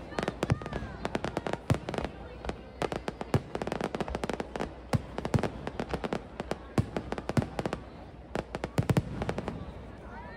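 Aerial fireworks going off in quick succession, a dense run of sharp bangs and crackles that thins out and stops near the end.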